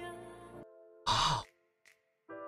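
Soft pop-ballad music with female vocals fading away, then a man's short breathy sigh about a second in, louder than the music, followed by quiet.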